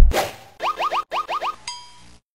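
Cartoon-style title-card sound effects: a loud swishing hit at the start, then six quick upward-sliding pitched blips in two groups of three, ending on a short held tone.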